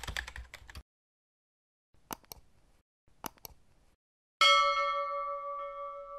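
End-card sound effects: a quick run of keyboard-typing clicks, then two short clicks a little over a second apart, then a bell chime about four and a half seconds in that rings on and slowly fades.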